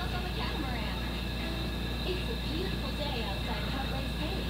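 Faint, muffled voices over a steady hum and hiss, like a video's dialogue playing back quietly through a phone speaker.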